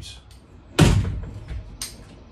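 A single heavy thump about a second in, fading quickly, then a brief sharp click near the end.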